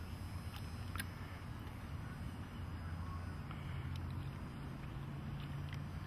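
A low, steady motor hum, with a few faint clicks in the first second and a second hum tone joining about three seconds in.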